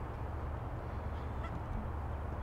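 A steady low outdoor rumble, with a single short, faint bird call, honk-like, about one and a half seconds in.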